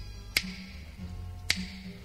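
Two finger snaps about a second apart, keeping the beat in a pause of an a cappella song, with faint low bass notes underneath.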